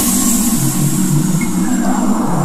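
Dark horror background music: low droning notes that shift in pitch under a loud, hissing noise wash that slowly fades.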